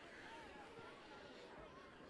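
Near silence, with faint distant voices from around a soccer field.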